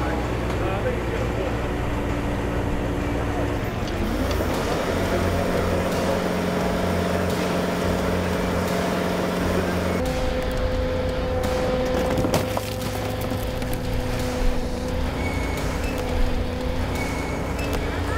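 Heavy diesel equipment running steadily: a compact track loader and a tow truck winching an overturned, lake-recovered car by cable. The engine note shifts about four seconds in and changes again around ten seconds.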